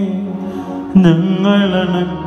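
Devotional chant sung in a slow, held melody over a steady low tone, with a new phrase starting about a second in.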